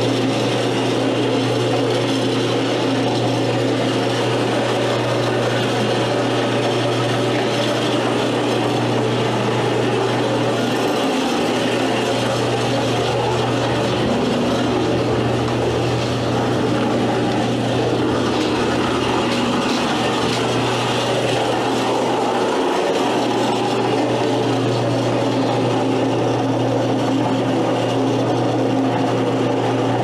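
Small foundry sand muller running: its electric motor drive hums steadily while the muller wheel and plows churn and scrape molding sand around the steel tub.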